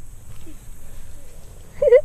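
A short, loud, wavering vocal sound near the end, a brief whoop or yelp from a person, over a steady low rumble on the microphone.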